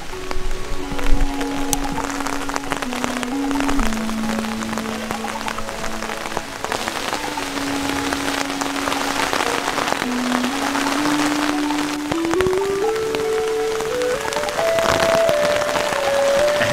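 Heavy rain beating steadily on a tarp shelter and the forest around it, under background music: a slow melody of long held notes that climbs in pitch near the end.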